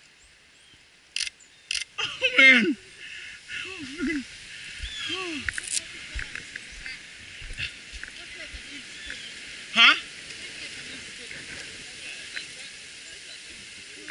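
Thin pond ice struck by thrown objects: two sharp clicks, then a run of short twanging chirps that glide up and down in pitch as the ice sheet rings.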